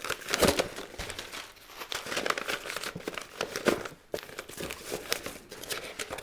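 Paper seed packets rustling and crinkling as they are shuffled and slid into a plastic storage tub, with irregular light taps and clicks.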